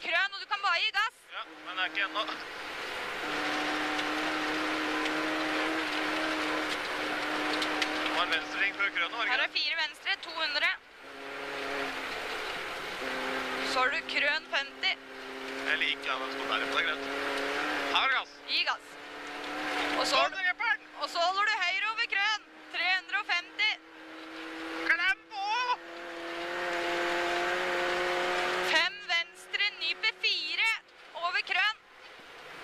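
Rally car engine at full speed on a snowy stage, heard from inside the cabin with loud tyre and road noise. Its note drops briefly twice, then climbs slowly for most of the second half as the car accelerates.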